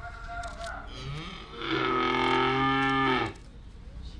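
A cow mooing once, one call of about two seconds that rises in pitch as it starts, holds steady, then cuts off abruptly.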